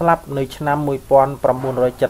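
Speech only: a narrator reading aloud in Khmer, with no other sound.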